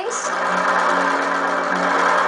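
Electric sewing machine running at a steady speed, stitching a seam.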